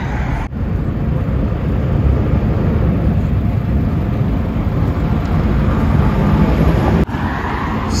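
Steady road traffic noise: a continuous rumble of passing cars, mostly low in pitch. It breaks off abruptly twice, about half a second in and about a second before the end, where the recording is cut.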